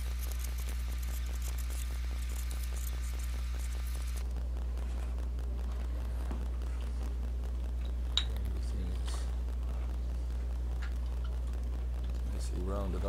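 Leather edge beveler scraping along the edge of a leather pouch: a rapid scratchy rasp for the first four seconds that stops abruptly, then a single sharp click a little past the middle. A steady low hum runs underneath throughout.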